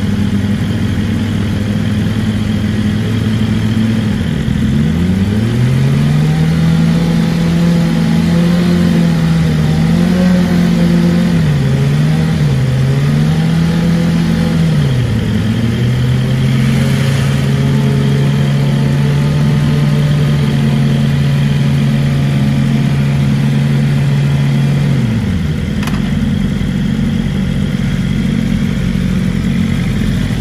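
BMW M1000RR's inline-four engine idling, then brought up about four seconds in to raised revs held steady for some twenty seconds, with a few brief dips and rises early on, before dropping back to idle near the end. A single sharp click sounds just after the revs fall.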